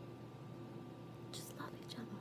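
Quiet room tone with a faint steady hum. About one and a half seconds in comes a brief, soft whispered sound from a woman.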